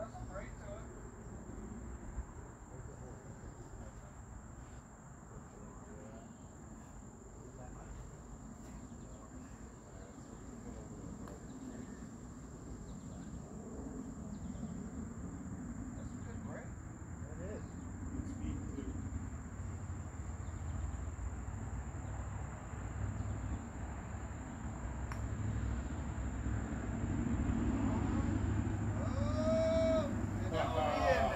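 Steady, high-pitched insect chirring, like crickets, under a low outdoor rumble. Faint distant voices come in near the end.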